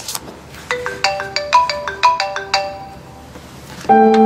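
iPhone ringing: a quick run of bright, marimba-like ringtone notes, a short pause, then the tune starts again, louder, just before the end.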